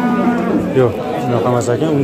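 People talking in Uzbek beside the livestock pens, their voices close and continuous.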